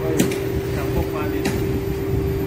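A construction machine's engine runs steadily, with a constant droning hum over a low rumble. Two sharp knocks come through, about a quarter second in and again at about a second and a half.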